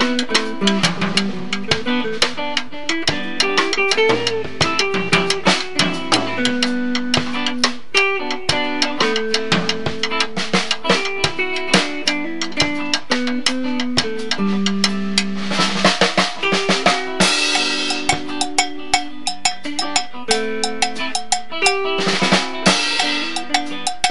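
Instrumental band music: an electric guitar picks a melody over a busy drum kit, with snare and bass drum hits throughout. The cymbals swell twice, about two-thirds of the way through and again near the end.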